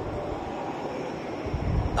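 Steady background rumble and hiss with no voice, at a moderate level.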